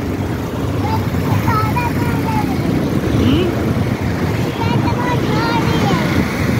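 Steady running noise of a motorcycle being ridden on a road, with wind rushing over the microphone.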